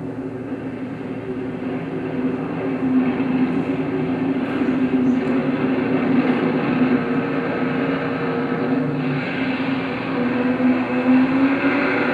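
Film soundtrack of engine and traffic noise played over a hall's loudspeakers: a steady droning hum that shifts slightly in pitch, growing louder over the first few seconds.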